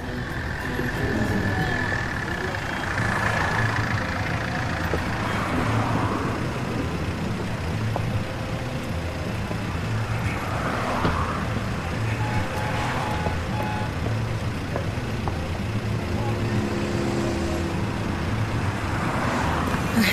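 Street traffic: car and van engines running steadily, with indistinct voices.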